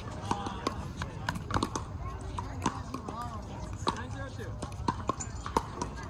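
Pickleball paddles hitting a plastic pickleball: irregular sharp pops, some ringing briefly, from this rally and from games on neighbouring courts, over a murmur of voices.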